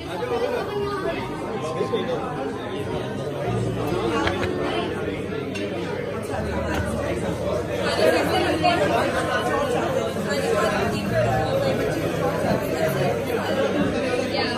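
Background chatter: many voices talking at once in a large indoor room, steady throughout.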